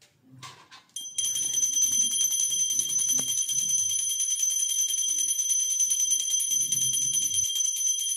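Pooja hand bell rung rapidly and without pause from about a second in, a steady high ring over fast, even clapper strokes, as is done during aarti.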